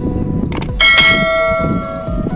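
A click sound effect followed by a bright bell that rings out with many overtones and slowly fades: the notification-bell sound of a subscribe-button animation.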